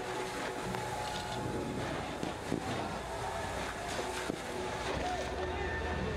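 Burning scooters being hosed down in a street: a steady rush of water spray and fire, broken by a few sharp cracks, with faint voices in the background.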